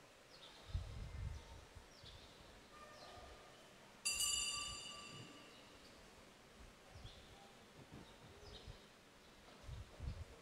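Quiet room tone during communion, with faint bird chirps. About four seconds in, a single sudden high ringing clink fades away over about two seconds.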